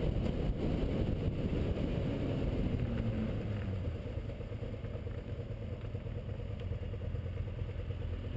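Sport bike engine running under way, with wind rushing over the mounted camera. About halfway through the engine note falls and the sound drops to a quieter, steady low running as the motorcycle slows to a near stop.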